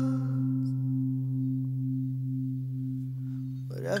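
Acoustic guitar chord left ringing and slowly fading, its low notes held steady with no new strums. Singing comes back in just before the end.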